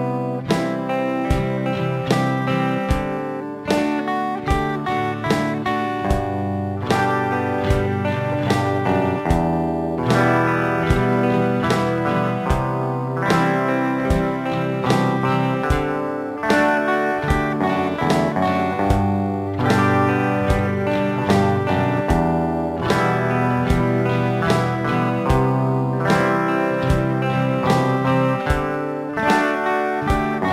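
Two guitars, electric and acoustic, play the G–Em–C–D (I–vi–IV–V) progression together. Each chord is a picked bass note followed by a strum, with walking bass runs of single notes leading into the next chord, in a steady even rhythm.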